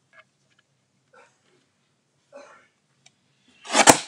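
Sliding-blade paper trimmer cutting a strip off a cardstock panel: a short rasp of the blade running along its rail, ending in a sharp click, near the end.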